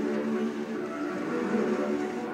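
Alto saxophone and bowed double bass holding sustained tones together in a free improvisation, with steady overlapping pitches and no break.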